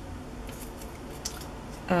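Small craft scissors clicking a couple of times amid light handling of paper magazine cutouts.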